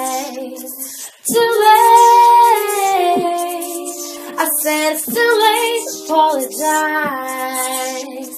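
A cappella female singing: one singer overdubbed in several harmony parts, holding chords that change every second or so, with a short break about a second in.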